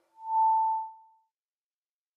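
Logo sting: a single steady electronic tone, one pure note lasting about a second that fades out.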